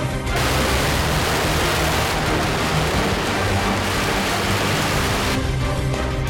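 A long string of firecrackers going off as one dense continuous crackle for about five seconds, starting just after the beginning and cutting off abruptly near the end, over background music.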